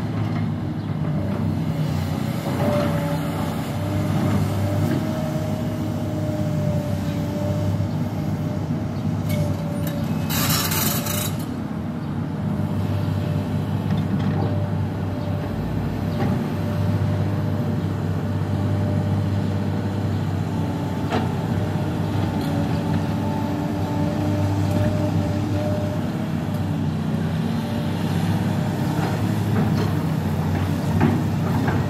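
Link-Belt tracked hydraulic excavator's diesel engine running steadily under load while it digs and swings its bucket, with a steady whine over the low engine hum. A brief hiss about ten seconds in.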